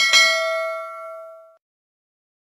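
A single bell ding from a subscribe-button notification-bell sound effect. It is struck once, rings with several clear tones together, and fades out within about a second and a half.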